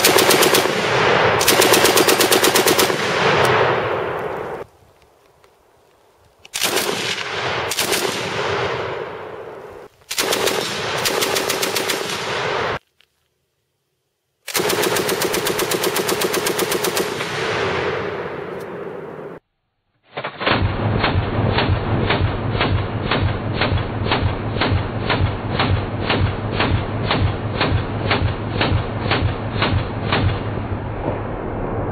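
An Italian WW2 Breda Model 37 heavy machine gun (8 mm Breda) fires several bursts of automatic fire, each a second or two long, with short pauses between them. From about two-thirds of the way in there is a long, evenly paced string of separate shots, duller than the bursts before.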